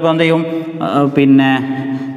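A man talking in a level, drawn-out voice with long held vowels.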